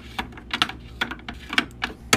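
Small round plastic cosmetic pots being set down and shuffled in a clear plastic organizer drawer: a run of quick, irregular plastic clicks and clacks, about eight in two seconds.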